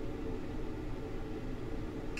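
Steady low hum and hiss of background room noise, with no distinct handling sounds.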